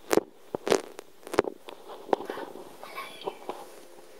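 Handling noise: four sharp crackles, roughly one every two-thirds of a second, then softer rustling, as a hand and camera push in among blankets in a cat's hiding place.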